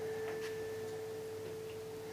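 A single soft, pure tone held steadily, a sustained note of background film score.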